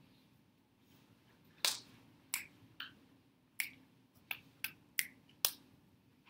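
A series of about eight sharp clicks at irregular intervals, over faint room hum.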